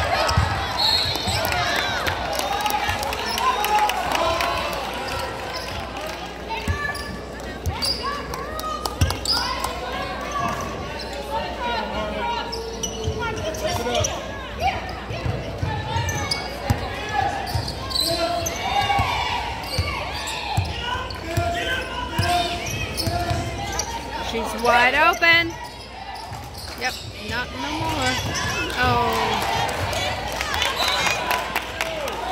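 Girls' high school basketball game on a hardwood court: the ball bouncing and players' and spectators' voices all through. About 25 seconds in, a short rising squeal stands out.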